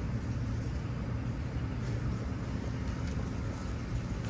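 Steady low rumble of outdoor background noise, with a few faint ticks.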